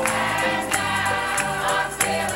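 Mixed church choir singing a gospel song over instrumental accompaniment with steady bass notes and a regular beat.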